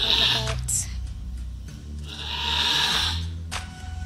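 A Nigerian Dwarf doe in labor bleating, one long strained cry about two seconds in, over soft background music.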